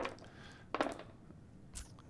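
Polyhedral plastic gaming dice rolled onto a table: a few short clicks and clatters, one cluster a little under a second in and another near the end.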